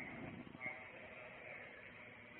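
A faint voice with a few seconds of low background noise.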